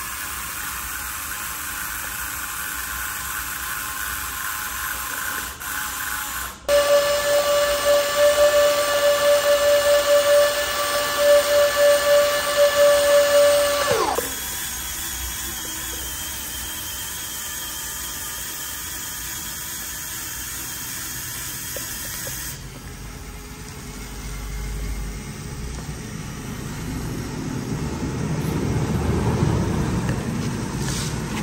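Small electric gear motor on a homemade cardboard model vehicle whirring. About seven seconds in, a loud steady whine starts, runs for about seven seconds and winds down with a falling pitch. A low rumble builds near the end.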